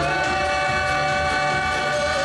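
Male singer holding one long, steady note into a microphone over the backing band's beat.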